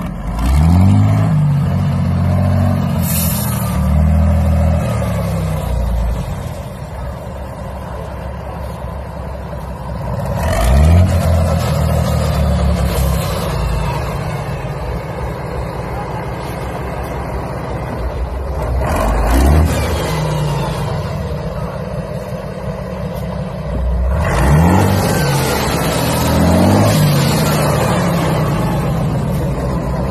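Large engine of a homemade monster tractor on giant tyres, revved up four times, each rev rising in pitch and falling back to a steady run between.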